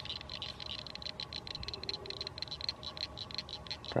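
Click-and-pawl fly reel being wound, giving a fast, even ticking of about ten clicks a second.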